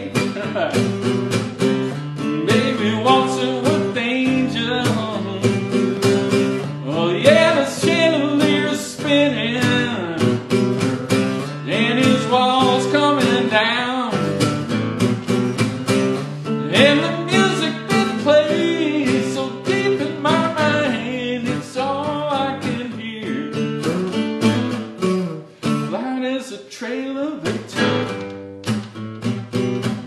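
A man singing a country-rock song to his own strummed guitar, with short guitar-only stretches between the sung lines.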